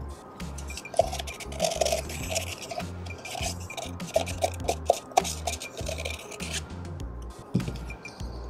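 Plastic spoon scraping and tapping against a plastic cup and mold, repeated short scrapes and clicks as the last wet dental stone plaster is worked out of the cup. Background music with a steady low beat plays underneath.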